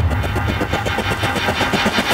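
Dramatic suspense score from a TV soundtrack: a rapid, even stutter of sharp pulses, about ten a second, over a low rumble.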